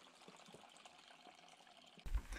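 Very faint pouring: cooking liquid trickling from a large pot into a plastic container.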